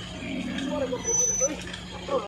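Indistinct voices of people talking in the background over a steady low engine hum, with a brief high thin tone about a second in.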